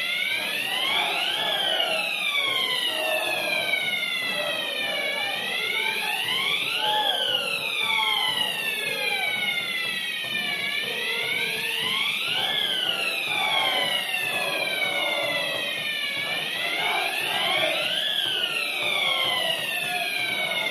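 A wailing siren, its pitch climbing quickly and then sinking slowly, four times, about every five and a half seconds, over crowd chanting.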